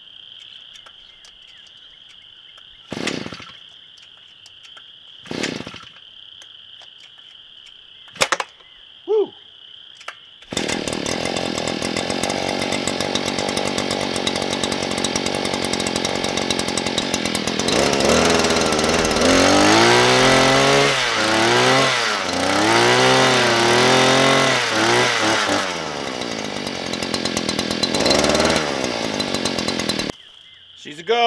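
Harbor Freight Predator post-hole auger's two-stroke engine being pull-started on its first run: several short yanks of the starter cord, then it catches about ten seconds in and runs steadily. It is revved up and down several times, then settles back.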